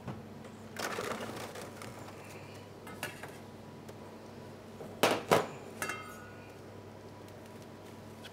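Cling film pulled off a kitchen film dispenser, rustling, then two sharp clicks about five seconds in as it is cut, followed by a brief light clink.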